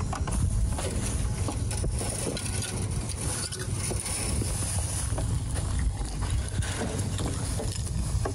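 Wind buffeting the microphone as a steady low rumble, with light footsteps and rustling on dry pine straw and grass.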